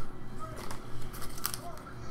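Trading cards and foil pack wrappers being handled on a tabletop: several short crinkles and clicks, the loudest about a second and a half in.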